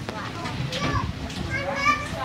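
Children's voices chattering and calling out, unintelligible, over a steady low rumble.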